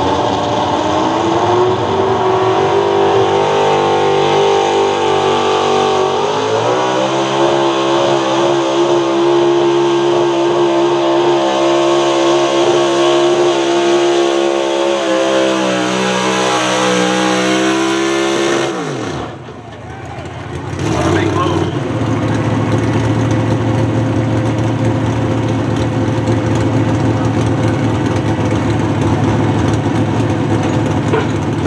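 Pro Stock 4x4 pulling truck's engine at full throttle hauling the pulling sled. Its pitch steps up twice in the first seven seconds and then holds high. After about nineteen seconds the throttle is lifted: the engine note falls sharply and briefly dips away, then the engine runs steadily at idle.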